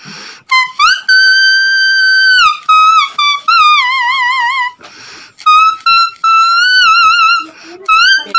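A melody played on a leaf held between the lips: a reedy, trumpet-like whistle that slides from note to note and wavers in a vibrato on held notes. It comes in several phrases with short breaks for breath.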